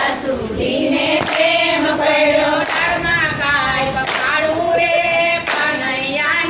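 A group of women singing a Gujarati devotional bhajan together and clapping along in a slow, even beat, one clap about every second and a half.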